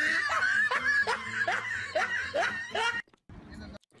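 A person laughing in a run of short repeated bursts, about two or three a second, stopping about three seconds in.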